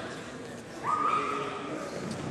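Gym room noise, then about a second in one drawn-out, high-pitched shout from a person's voice.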